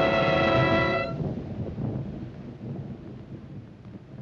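An orchestral chord cuts off about a second in, followed by a low rumble that fades away over the next few seconds.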